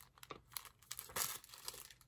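Clear plastic packaging, a wig-cap packet, crinkling in short irregular rustles as it is handled, the loudest about a second in.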